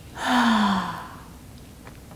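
A woman's audible sigh: one breathy exhale with a softly voiced tone that falls in pitch, lasting just under a second and starting about a quarter second in. It is the exhale into a reclined spinal twist.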